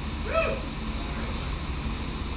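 Steady low hum from the band's idle amplifiers on stage between songs, with one short hooting voice call about half a second in.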